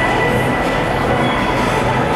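Steady rumbling ice-rink background noise, with faint high tones running through it.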